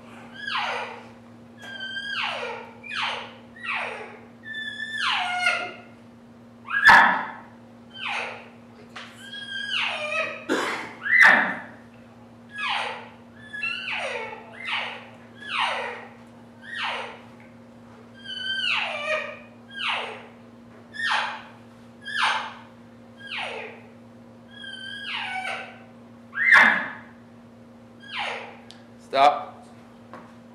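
Cow elk mews and chirps blown on a reed elk call: a long series of short calls, about one a second, each falling sharply in pitch, some breaking or chirping. A steady low hum runs underneath.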